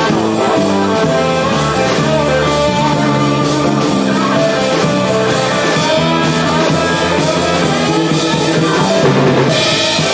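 Live band music: a drum kit with cymbals and a grand piano playing together in a steady, continuous number, with a stepping low line underneath.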